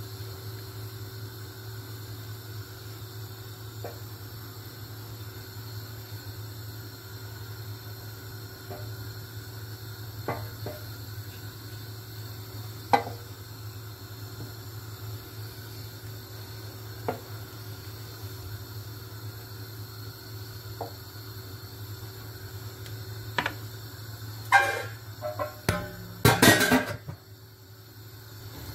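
A spoon stirring thick tomato purée in a large stainless-steel pot, with a knock against the pot every few seconds over a steady low hum. Near the end comes a run of loud clatters as a glass lid is set onto the pot.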